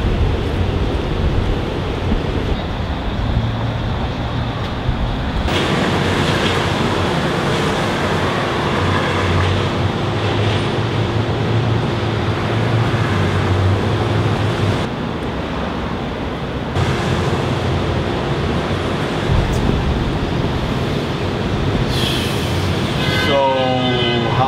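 Loud, steady rumble of a large vehicle or heavy traffic running, with a steady hum that comes in about five seconds in and drops out briefly around fifteen seconds.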